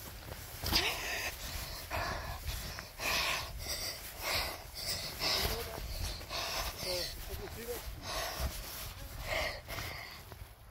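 A person breathing hard while pushing quickly through tall grass, the breaths and grass swishes coming in irregular noisy bursts about once a second.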